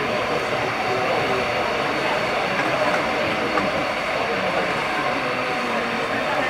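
Steady crowd noise with indistinct voices mixed in.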